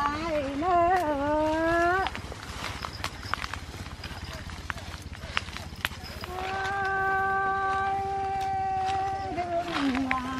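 A woman singing a Tày khắp folk song unaccompanied: a short wavering phrase at the start, a pause about two seconds in, then one long held note from about six seconds to nine that slides down into the next phrase.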